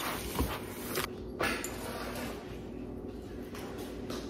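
Wooden spoon and plastic spatula stirring a coarse potting mix of coco coir, orchid bark and charcoal chunks in a plastic tub: scraping and crunching, with a few knocks in the first second and a half.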